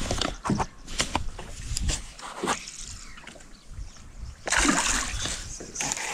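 Water splashing at the surface as a hooked bass thrashes near the boat: scattered short splashes at first, then a longer stretch of splashing from about a second and a half before the end.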